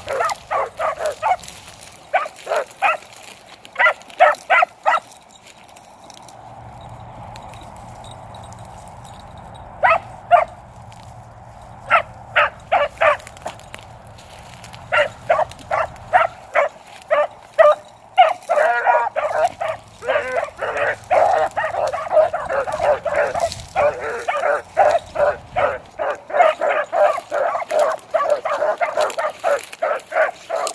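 Two beagles baying on a scent trail: quick, repeated barks, a few a second. After a pause of about four seconds the barking picks up again and grows denser, with both dogs' voices overlapping in the second half.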